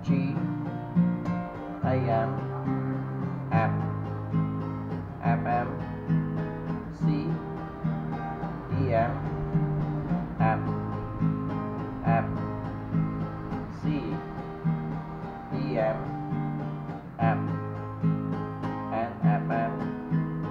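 Steel-string acoustic guitar, capoed at the third fret, strummed in a steady rhythm. The chord changes about every second and three quarters, each change marked by a firm downstroke.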